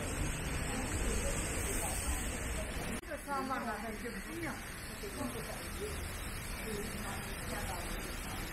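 People talking nearby, not close to the microphone, over a steady outdoor hiss. About three seconds in the sound breaks off abruptly, and after that a voice is clearer.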